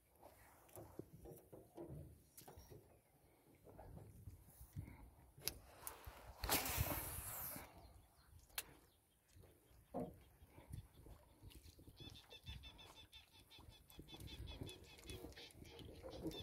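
Faint knocks and handling sounds from a small fishing boat, with a short louder rushing noise about seven seconds in. Birds chirp faintly over the last few seconds.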